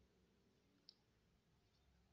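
Near silence, with a single faint click about a second in.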